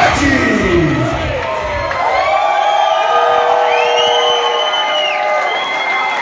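Concert crowd cheering and whooping. The music's beat stops about two seconds in, leaving long, high whoops and screams over the crowd noise.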